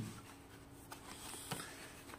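Faint handling of a cardboard box and the fabric drawstring pouch inside it, with two light ticks, about a second in and about half a second later.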